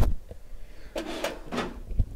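A click, then about a second in a brief sliding, rubbing sound, like something pushed or wiped across the desk.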